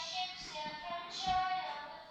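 A young girl singing a song, moving through a few held notes.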